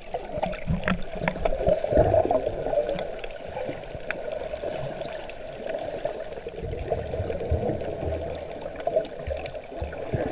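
Muffled underwater water noise picked up by a GoPro held just below the surface: water sloshing and gurgling, with irregular low bumps.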